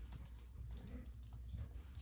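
Faint typing on a computer keyboard as a password is entered: a quick, irregular run of key clicks, several a second.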